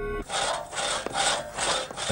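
Steady title music cuts off just after the start, then four even rasping strokes follow at about two a second, each a short scrape of roughly a third of a second.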